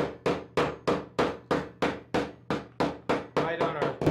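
Hammer striking a strip of folded steel mesh on a wooden board, pounding the fold flat. It makes a steady run of sharp strikes, about three a second, which stop just before the end.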